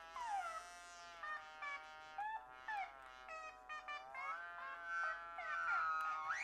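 A single high-pitched melodic tone, sung or played, that slides and steps between held notes and rises near the end.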